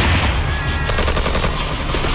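Automatic gunfire: a rapid rattle of shots over a heavy low rumble, the shots thinning out after about a second.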